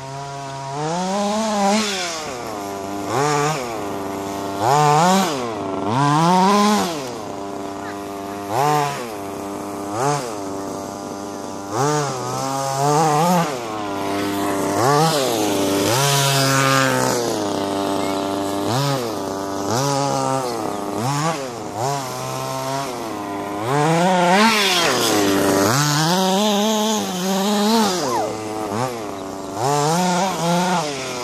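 An RC buggy's small two-stroke nitro engine racing around a dirt track, its revs rising and falling again and again as the throttle is blipped through the corners.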